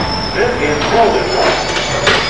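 Train noise at a railway platform: a steady rumble with a thin, high-pitched squeal held above it.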